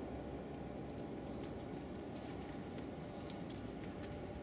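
Quiet outdoor background noise, steady and low, with a few faint, soft ticks scattered through it.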